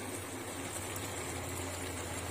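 Mutton with onions and green chillies cooking in an open aluminium pressure cooker over a gas flame: a steady, low simmering hiss as the water released from the meat cooks off, with a faint low hum underneath.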